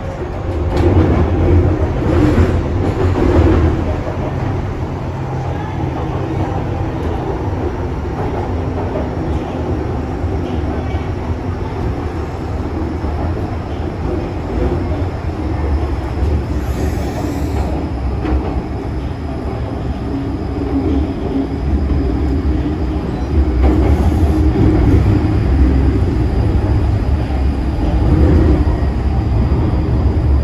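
An MTR M-train electric multiple unit running at speed, heard from inside the car by the doors. Wheels on rail and the traction gear make a steady low rumble, which swells louder near the start and again in the last several seconds.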